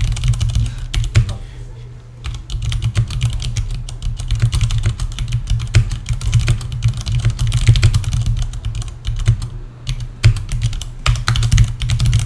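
Typing on a computer keyboard: rapid, uneven runs of key clicks that go on without a break of more than a moment.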